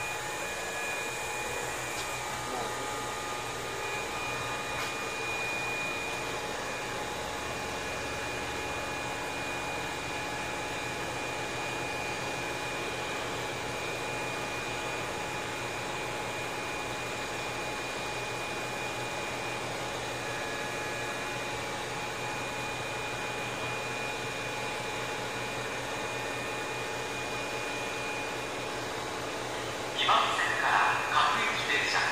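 Sotetsu 7000 series electric train standing at rest: a steady hum and whir of its onboard equipment, with a few thin steady tones over it.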